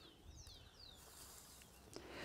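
Faint bird calls: a quick run of about four short, falling whistled notes in the first second.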